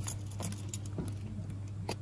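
Silicone muffin pans in cardboard sleeves being handled and pushed into a stack, giving about four light clicks and rustles, over a steady low hum.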